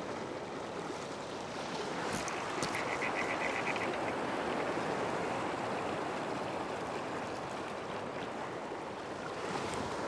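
Surf washing over a rock ledge, a steady rush of waves that swells a little through the middle. About three seconds in comes a quick run of faint clicks lasting about a second.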